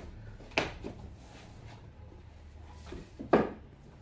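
Books being handled and set onto a shelf: a few short knocks and light scrapes, the loudest a little after three seconds in.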